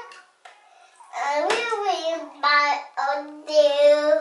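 A young child vocalizing in a sing-song voice without words: four or five drawn-out notes with short breaks, the last one longest and loudest.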